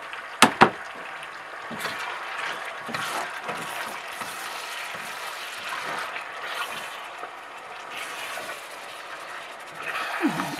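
Beef cubes sizzling in hot oil in a stainless steel pot as they are turned with a silicone spatula: a steady hiss, with two sharp knocks about half a second in. The oil is hot enough that the meat sears on contact.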